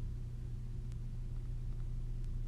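Steady low background hum, with a faint click about a second in.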